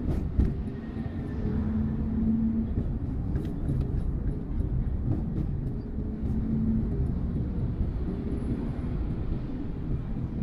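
Steady low rumble of engine and tyre noise inside a moving car, with a few sharp clicks near the start and again around three and a half seconds in.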